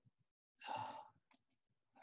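A person sighing, one breath out lasting about half a second and starting about half a second in, followed by a faint click.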